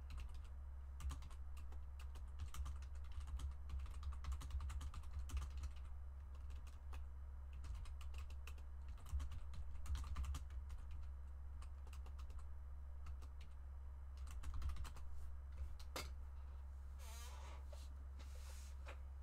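Typing on a computer keyboard: irregular runs of key clicks with short pauses between them, over a steady low hum.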